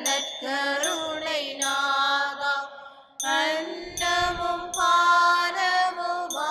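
A solo voice singing a slow chant-like hymn melody in long held notes that waver and bend between pitches, with a short break about three seconds in.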